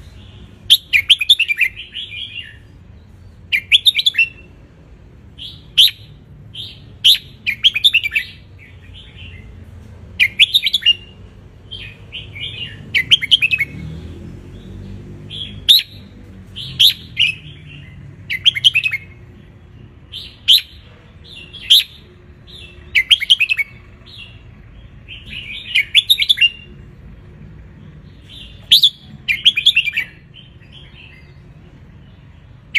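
Red-whiskered bulbul singing: short, loud, chirping phrases repeated every second or two.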